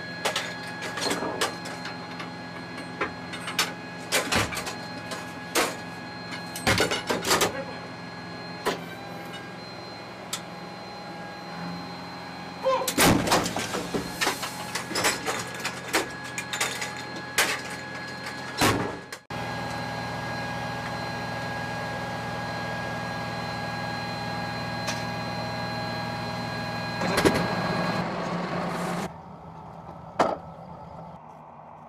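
Inside an M109A6 Paladin howitzer's crew compartment: the vehicle's machinery hums steadily under repeated metallic clanks and knocks as 155mm rounds and the breech are worked, with louder bursts of clanking about halfway through and near the end.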